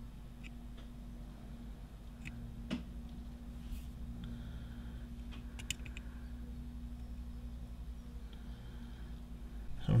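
Quiet bench work while a joint is soldered: a steady low electrical hum with a few faint clicks and a brief faint hiss.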